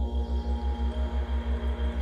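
Ambient meditation background music: soft, steady held tones over a deep low drone that throbs evenly, about seven times a second.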